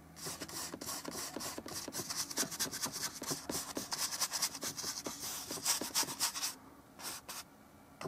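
Paintbrush scrubbing oil paint onto a canvas in many rapid short strokes, stopping about six and a half seconds in, followed by two brief strokes.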